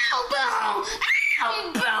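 A child shouting and screaming in high-pitched voices, with one long high scream about a second in.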